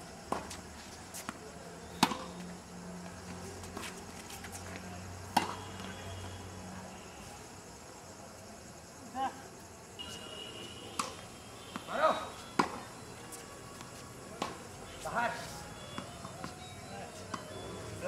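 Sharp single pops of a tennis ball struck by rackets and bouncing on a hard court, irregularly spaced from under a second to several seconds apart.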